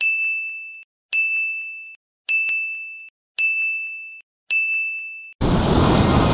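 Five electronic dings about a second apart, each a single high tone that starts sharply and fades out. Near the end a loud, dense burst of sound cuts in.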